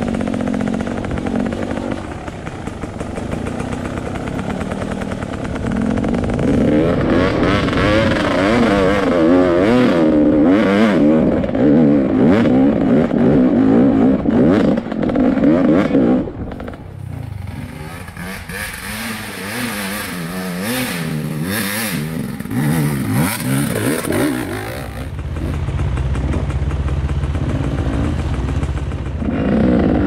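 Off-road dirt bike engine heard from the rider's helmet, revving up and down rapidly over rough trail with some rattling. About halfway through it drops back to a lower, steadier running note.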